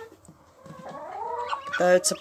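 A Muscovy duck hen calls softly, a low sound that rises and falls in pitch, starting about half a second in.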